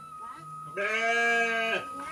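A sheep bleating once: a single steady call about a second long, starting a little under a second in.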